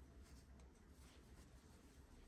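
Near silence: faint room hum with soft rustling and scraping of yarn being worked on a crochet hook.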